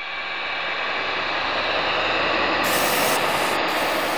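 A rushing hiss of noise that swells steadily to a peak about three seconds in and then begins to ebb, like an edited whoosh or riser sound effect.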